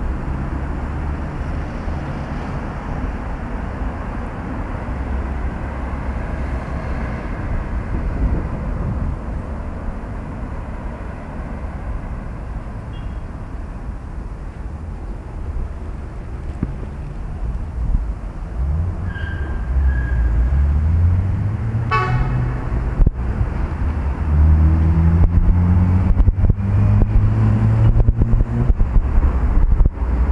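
Street traffic: a steady low rumble of passing vehicles, with an engine rising in pitch as it speeds up in the second half and a short car horn toot about two-thirds of the way through.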